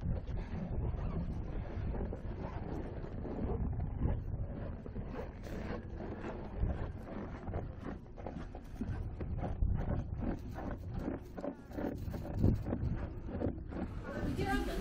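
Wind buffeting the microphone in an irregular low rumble, with a few faint knocks in the second half.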